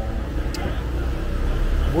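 Low, steady rumble of street traffic, with a single faint high click about half a second in.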